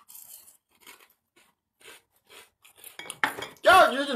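A person biting and chewing food close to the microphone, heard as scattered faint short clicks and crunches. A loud voice comes in near the end.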